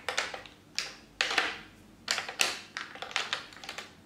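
Plastic lipstick tubes clicking and clattering against one another and a clear acrylic organizer tray as they are moved around by hand, in about five short clusters of clicks.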